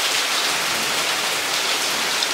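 Steady rain falling, a continuous even hiss.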